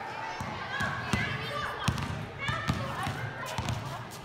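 A basketball dribbled on a concrete court: repeated sharp bounces, with sneakers and children's voices around it.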